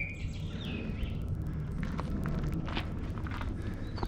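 Footsteps on a dirt path, a scatter of short scuffs and crunches, with birds chirping in the background.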